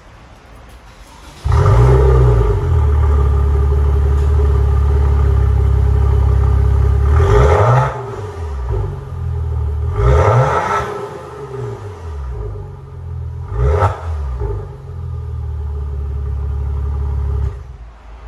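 Maserati Ghibli S's twin-turbo V6 heard at its exhaust tips. It starts about a second and a half in and runs at a fast idle. It is then blipped three times, the revs rising and falling each time, and it is switched off just before the end.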